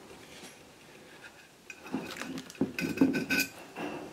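Rolled stainless steel expanded metal lath clinking and rattling against a glass jar as it is lifted out and handled: a quick run of light metallic clinks with a short ringing tone, starting about halfway through.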